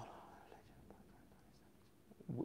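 Near silence: faint room tone in a pause between spoken phrases, with the last of a man's word fading out at the very start.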